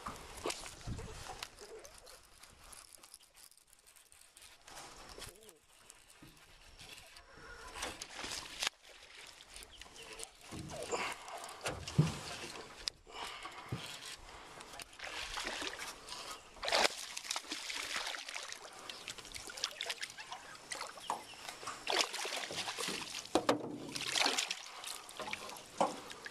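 Water splashing and sloshing at the surface as a largemouth bass is fought on a frog lure and brought to hand, with sharp irregular splashes in the second half.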